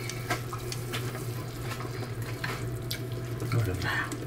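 Pot of hot pot broth bubbling steadily on the stovetop, with a constant low hum underneath and a few light clicks of chopsticks against the pot and dishes.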